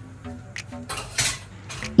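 Metal cookware clinking and scraping as pans and a large aluminium pot are handled at a gas stove, with a brief louder clatter a little over a second in.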